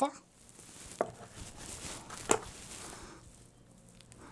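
Handling noise as plastic massage-gun attachment heads are taken out of their carrying case: two light knocks, about a second in and again past two seconds, with soft rustling between.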